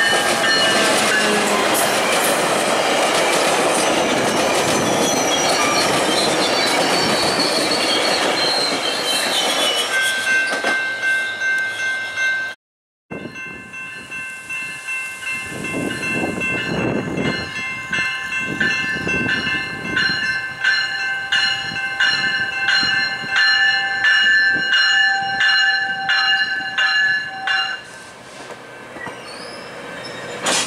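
GO Transit commuter trains passing over a level crossing: first an EMD F59PH diesel locomotive and its bilevel coaches go by, loud and rumbling, then the sound cuts out for a moment. Then a push-pull train's cab car and bilevel coaches roll past with a regular clatter of about two strokes a second over the steady ringing of the crossing signal.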